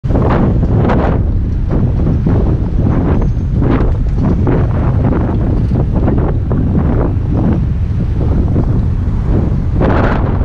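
Wind buffeting the microphone of a camera on a moving bicycle: a loud, constant low rumble with frequent irregular gusty surges.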